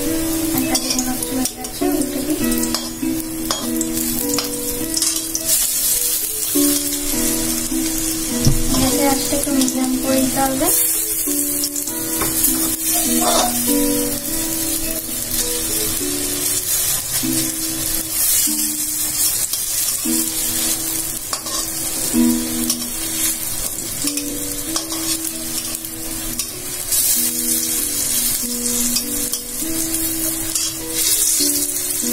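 Split-pea (matar dal) fritters sizzling steadily as they shallow-fry in oil in an aluminium kadhai, stirred and turned with a metal spatula. Soft background music plays along.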